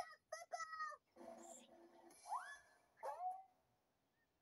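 Cartoon soundtrack playing from a TV: short character vocal sounds with gaps between them, one rising in pitch about two seconds in.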